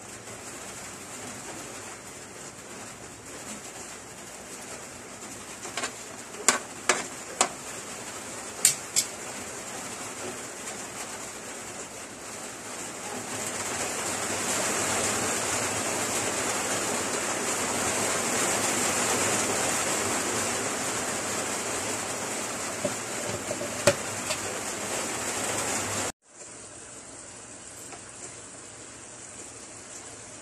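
Pork simmering in sauce in an aluminium wok on a gas stove, a steady bubbling hiss that grows louder after about 13 seconds. A metal spoon clinks sharply several times about six to nine seconds in and once more near the end. The hiss stops abruptly near the end and comes back fainter.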